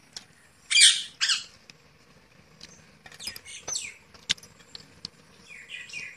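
Rose-ringed parakeet squawking: two loud harsh squawks about a second in, then a run of shorter calls around three to four seconds and fainter chirps near the end, with a few sharp clicks in between.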